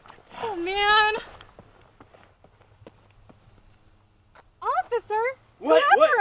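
Human voices screaming and yelling without words: one long high scream about half a second in, then a quick run of short shouted cries that rise and fall in pitch near the end.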